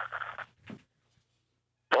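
The tail of a man's drawn-out hesitation "uh" and a brief breath-like sound, then about a second of dead silence, as on a gated phone line, before speech resumes at the very end.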